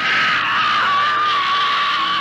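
A young girl's long, high scream, held unbroken with a slight drop in pitch.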